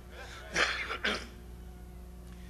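A man clearing his throat into a microphone: two short, rough rasps about half a second apart.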